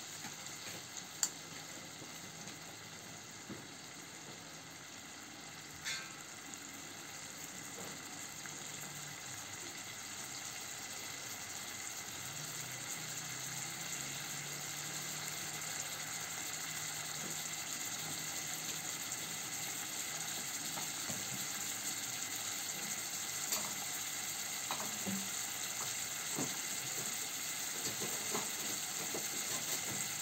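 Marinated pork pieces frying in oil in a small marble-coated electric multi-cooker pot: a steady sizzle that grows slowly louder, with a few small pops.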